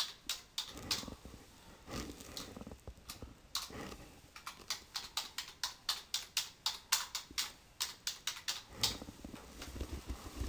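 Typing on a computer keyboard: scattered keystrokes at first, then a quick run of key clicks from about four seconds in until near the end.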